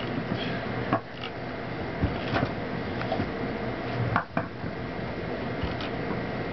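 Skateboards knocking on a concrete sidewalk: several short, sharp clacks of decks and wheels hitting the pavement at uneven intervals, over a steady hiss.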